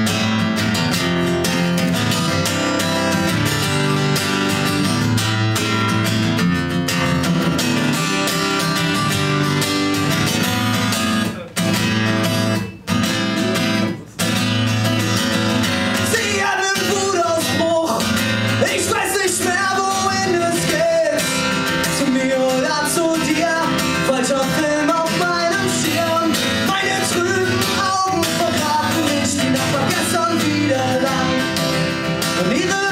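Acoustic guitar strummed in a steady rhythm, with three brief stops in the strumming a little before the middle. A man's singing voice comes in over the guitar about halfway through.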